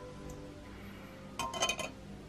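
Soft background music, with a quick run of several light, ringing clinks about a second and a half in.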